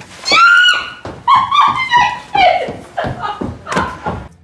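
A person's loud, high-pitched voice without words: one long cry, then a run of shorter cries whose pitch rises and falls.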